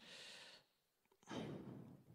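A man breathing, faint: two breaths, each about half a second long, the first a thin hiss and the second fuller.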